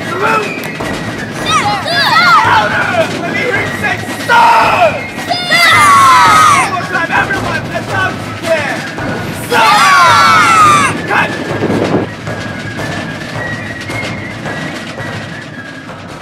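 Shouted military drill commands and voices calling out, in loud bursts about a second long, several times, with quieter stretches between; the sound dies away near the end.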